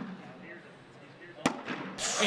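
A thrown cornhole bag landing on the wooden board: one sharp slap about a second and a half in, followed by rising crowd voices. The bag does not stay on the board.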